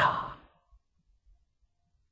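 An elderly man's spoken word ending and trailing off in a breathy fade within the first half second, then near silence.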